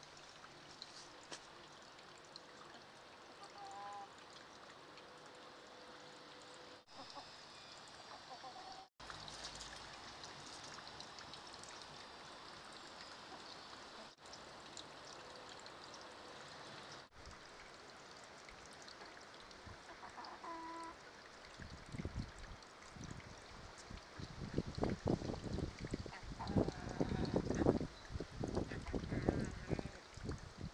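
Low steady background hiss with a few short, faint chicken calls. In the last eight seconds or so it gives way to louder, irregular rumbling thumps and rustles.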